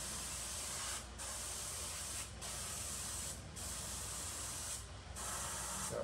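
Airbrush spraying paint with a steady hiss, cut off briefly four times about a second apart as the trigger is let go.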